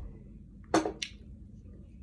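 Drinking juice from a glass through a straw: a short, loud breathy sound as the sip ends, then a sharp click a moment later as the glass is set down.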